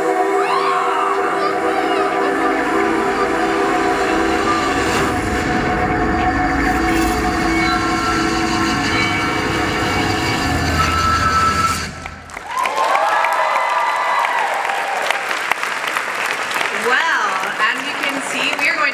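Soundtrack of a haunted-maze promotional video played over a hall's speakers: a sustained droning chord over a deepening low rumble that cuts off suddenly about twelve seconds in, followed by wavering voice-like tones.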